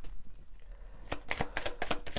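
Tarot cards being shuffled by hand, a quick run of light clicks starting about a second in.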